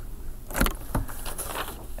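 A few faint knocks and clicks over low room noise, the clearest about half a second in and another about a second in.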